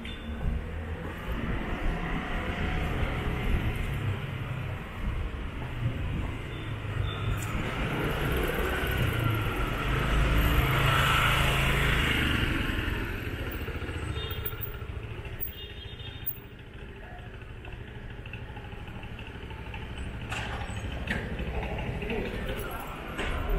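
A motor scooter passing close alongside, its engine and tyre noise swelling to loudest about halfway through and then easing off, over steady street traffic noise.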